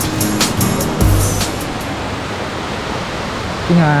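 Background music with a beat stops about a second and a half in, leaving the steady rush of water flowing over a rocky forest stream. A voice starts near the end.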